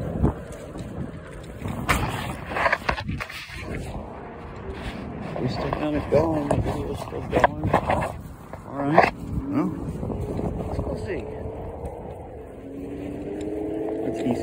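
Riding an electric scooter over asphalt: steady wind and road rumble on the phone's microphone, with several sharp knocks and rattles from bumps, and a faint steady tone that rises slightly near the end.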